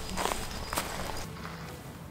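Footsteps on a forest floor of dirt and leaf litter: a few separate steps, growing quieter after about a second.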